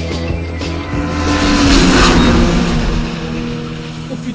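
A Peugeot 406 taxi passing at very high speed: a rush that swells to its loudest about two seconds in and fades away, its pitch dropping as it goes by, over rock music.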